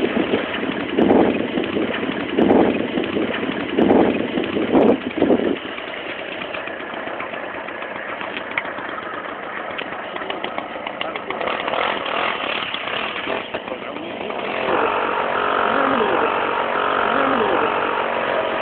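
Several loud bursts in the first five seconds, then a small engine running steadily, growing louder near the end.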